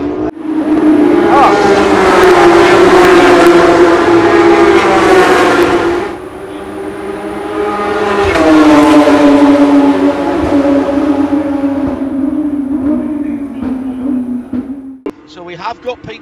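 Porsche 911 GT3 Cup race cars' naturally aspirated flat-six engines running at high revs, loud. The sound comes in two long stretches of about six seconds each, with a dip between them, and the second cuts off suddenly about a second before the end.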